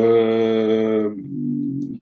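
A man's drawn-out hesitation sound: a held, level-pitched 'eee' for about a second, sinking into a quieter, lower hum before he speaks again.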